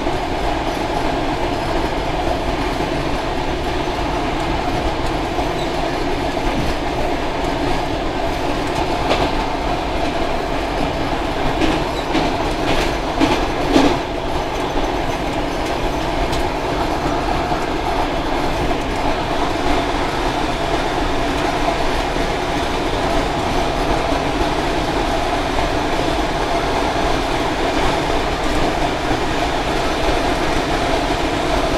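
Cab of an ER2 electric multiple unit running along the line: steady running noise of wheels on the rails, with a run of sharper clicks about twelve to fourteen seconds in.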